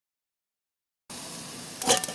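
Silence for the first half. Then a Swedish army mess-tin stove with its alcohol burner lit under a pot of water sets in: a steady rushing hiss of flame and heating water. A brief sharp noise comes near the end.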